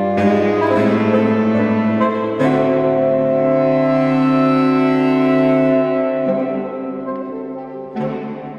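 Saxophone quartet of soprano, alto, tenor and baritone saxophones playing sustained chords. The chord changes a couple of times early, then a long chord from about two and a half seconds in is held and fades down toward the end.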